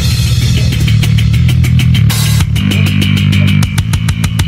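Background rock music with a steady drum beat over a sustained bass line.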